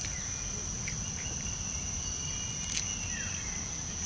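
Insects droning in one steady, high-pitched tone, with a few sharp clicks: one near the start and one about three-quarters of the way through.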